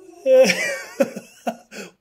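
A person's voice in a few short, breathy bursts about half a second apart, the first the loudest.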